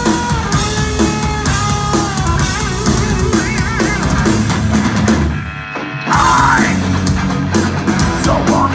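Heavy metal band playing live at full volume: driving drums and heavy guitars under a sustained high melody line. About five seconds in the band drops back for roughly a second, then comes crashing back in.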